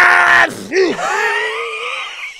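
A loud, high-pitched human scream that breaks off about half a second in, followed by a long, wavering wail.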